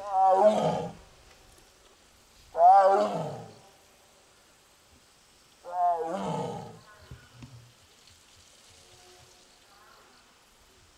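An Amur tiger calls three times, each call loud and about a second long, a couple of seconds apart. These are calls after being separated from its sibling tiger, whom it has been crying out for.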